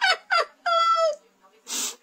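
A man laughing in a high falsetto: two quick falling squeals, then a longer held high note that drops at its end, and a short breathy exhale near the end.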